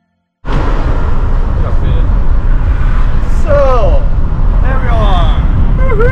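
Loud, steady low rumble of a car on the move, starting abruptly about half a second in, with short bursts of voices over it.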